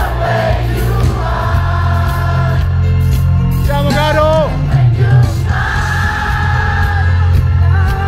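Live pop band playing at a stadium concert, heard from inside the crowd: a heavy bass line under long held sung notes, and about four seconds in a single voice sliding up and down in a short vocal run.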